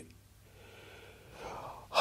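A pause in a man's speech, ending in a short audible in-breath before he speaks again.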